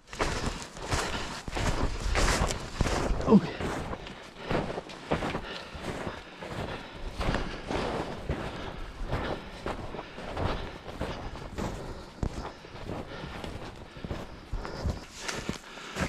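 Irregular crunching footsteps, with skis and poles, through deep fresh snow, along with the rustle of clothing and gear. There is a short voice-like sound about three seconds in.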